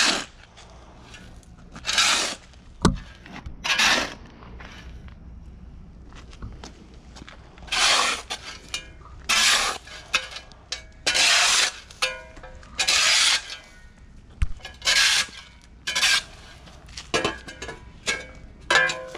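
A steel shovel scooping and scraping soil and tossing it into a planting hole, a gritty scrape every one to two seconds with a short pause in the middle.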